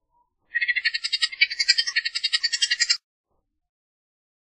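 Bullock's oriole giving its dry, rapid chatter call: a harsh rattle of about a dozen notes a second that starts about half a second in and lasts about two and a half seconds.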